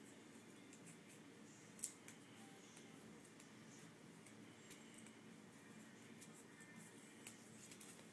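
Near silence with a few faint clicks and rustles, the sharpest about two seconds in: fingernails picking at a paper wristband.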